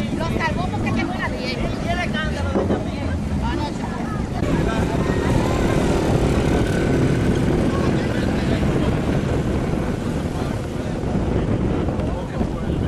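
Scattered voices of a marching crowd over a heavy low rumble of wind on the microphone, with motorcycle engines running among the marchers; from about four seconds in the din grows louder and denser.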